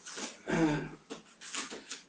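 A man's breathing and a short wordless vocal sound about half a second in, falling in pitch, with breathy exhales around it.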